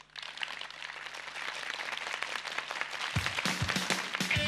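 Studio audience applause, growing louder, then about three seconds in a rock band's kick drum and bass come in as the song starts.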